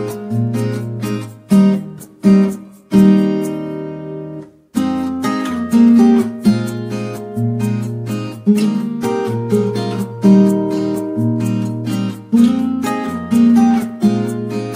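Background music: a strummed acoustic guitar playing chords in a steady rhythm, breaking off briefly about four and a half seconds in.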